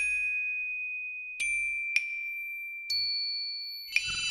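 Sparse struck metal bell-like notes, each ringing on and slowly dying away: one high note is struck at the start and again twice in the second and third seconds, with a higher note joining about three seconds in. This is sparse chiming music accompanying the dance.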